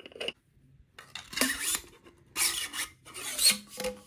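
A 3D-printed lightsaber blade scraping against the inside of a 3D-printed hilt as it is pushed in, printed plastic rubbing on resin, in three rasping strokes of about half a second each.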